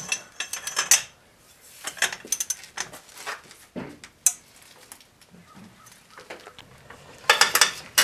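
Sharp metal clinks and clanks of a socket and breaker bar being fitted onto a car wheel's lug nuts and levered to break them loose. The clinks come in scattered groups, with a busier clatter near the end.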